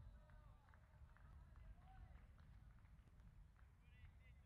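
Faint, distant calls and voices of cricketers on the field over a low steady rumble, the whole very quiet.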